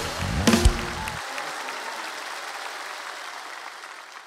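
A live band's closing chords with a couple of sharp drum hits, ending about a second in, followed by studio audience applause that fades away.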